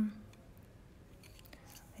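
A held, hummed "um" fades out at the start, then quiet room tone with a few faint light ticks.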